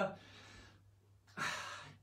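A man breathing as he pauses to think: a soft breath fading out, then a louder sigh-like breath about a second and a half in.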